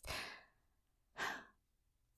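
A person's sigh, a breathy exhale fading out over about half a second, then a short breath in about a second later.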